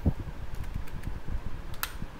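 Computer keystrokes over a steady fan-like hum, with one sharp click near the end.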